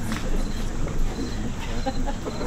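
Indistinct voices of several people talking at once, no clear words.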